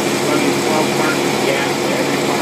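Engine running steadily on a test stand, fed by a Rochester Quadrajet four-barrel marine carburetor, which sounds smooth with no stumble.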